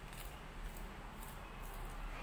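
Quiet room noise in a kitchen: a steady low hum with a few soft, irregular ticks.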